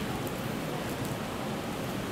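Steady, even background hiss of the room and recording, with nothing else standing out.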